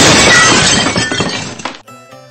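Glass-shattering sound effect: a sudden loud crash with tinkling fragments that dies away after under two seconds.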